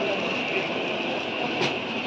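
Steady background din of a busy market, with one sharp click about a second and a half in.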